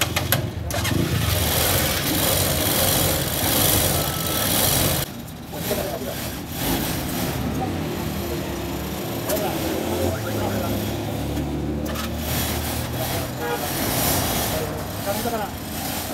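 A motorcycle rickshaw's engine running while it is tried out after a clutch replacement. It is loud and rough for the first few seconds, drops briefly about five seconds in, then runs more steadily.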